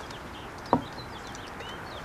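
A single sharp knock a little under a second in, with a few faint bird chirps in the background.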